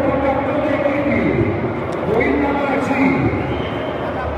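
Mostly speech: a man's voice, indistinct and echoing, over the steady murmur of people in a large hall.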